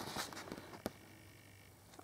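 Quiet room tone with faint handling noise, fading away, and one short sharp click just under a second in.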